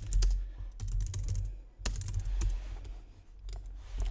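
Typing on a computer keyboard: a quick run of keystrokes at first, then a few scattered key clicks.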